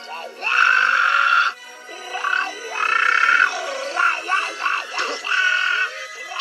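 A cartoon character voice doing a tuneless, screeching squawk-song meant as a romantic serenade: three long, loud, raspy held notes with short warbling breaks between them, over soft background music.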